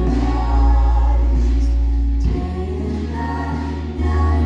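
Live worship band playing with voices singing together, over held low bass notes; the bass moves to a new note about two seconds in.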